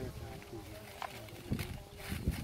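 Faint voices in the background, with a short click about a second in and a few low knocks from handling near the end.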